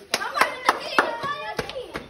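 A few sharp, irregular claps, about five in two seconds, over excited shouting voices.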